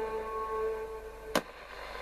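Roberts RT22 transistor radio playing on FM with a steady held note, then one sharp click about one and a half seconds in as its band switch is pressed over to medium wave.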